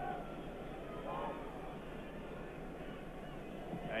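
Steady murmur of a large football stadium crowd, heard as a muffled haze on a narrow-band archive broadcast soundtrack, with a faint voice about a second in.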